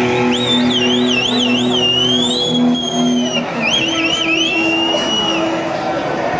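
Live thrash metal band's electric guitars: high squealing notes that waver rapidly up and down in pitch, in two runs, over a low held note pulsing evenly, as a song winds down.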